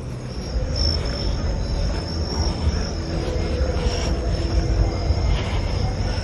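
Crickets chirping in a steady high-pitched chorus over a low rumble, with faint distant rock band music in the middle.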